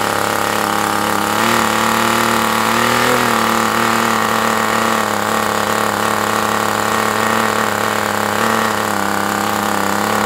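Super Tigre G75 two-stroke glow engine running steadily on its first break-in run, turning an APC 11x8 propeller. Its pitch lifts a little a second or two in and then holds with slight wavering.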